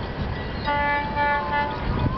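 Air horn of a GT-22 diesel-electric locomotive sounding one blast of about a second, starting just over half a second in. The blast is a chord of several steady notes, heard from far off.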